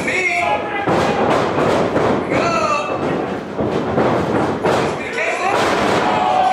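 Pro wrestling ring impacts: a run of about ten thuds and slams as the wrestlers' bodies hit the ring canvas, ending with one wrestler taken down flat on the mat. Voices shout over the impacts.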